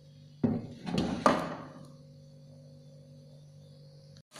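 Wooden spatula knocking against a granite-coated frying pan of heating oil: three knocks in the first second and a half, over a faint steady hum.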